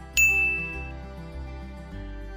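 A single bright ding, an editing sound-effect chime, strikes just after the start and rings out for under a second. Soft background music plays under it.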